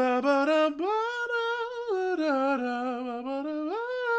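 A man humming a song's melody back unaccompanied, in long smooth held notes. The tune climbs in the first second, sinks step by step through the middle and rises again near the end.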